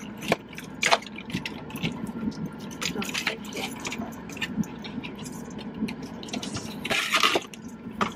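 Cardboard box being handled and pulled open by hand: scattered crackles and clicks of the flaps, with a louder rustling rip about seven seconds in.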